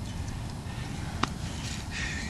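Low, steady rumbling background noise with a single sharp click just past a second in.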